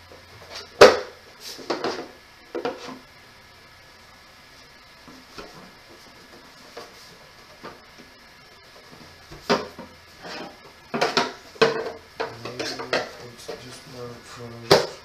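Hard plastic parts of a toddler's chair knocking and clacking together as they are handled and fitted: one loud knock about a second in and two lighter ones, a quiet stretch, then a quick run of clacks near the end.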